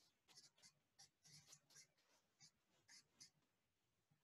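A marker pen writing, very faint: a string of short, scratchy strokes as a word is written out by hand.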